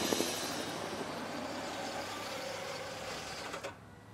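Cartoon helicopter sound effect: a steady whirring rotor that slowly fades as the helicopter flies away, cutting off just before the end.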